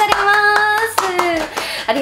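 Hands clapping a few times, mixed with a drawn-out, high-pitched voice held for about a second and then falling away.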